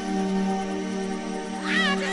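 Breakdown of a 1990s 'remember' dance track played from vinyl: sustained synth chords with no bass or drums, and near the end a high, wavering note slides up and warbles.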